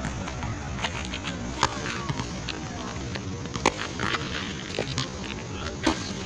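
Boxing gloves smacking against handheld focus mitts: four or so sharp smacks at irregular gaps of one to two seconds, over steady low background noise.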